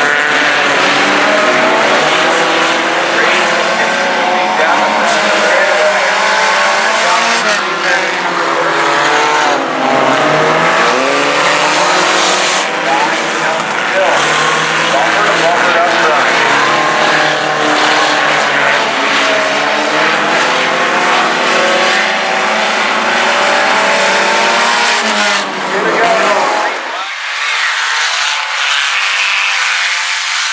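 Sport compact race cars' engines running on a dirt oval, several engine notes rising and falling as the cars circle. About 27 seconds in the low engine sound drops away, leaving a fainter higher hiss.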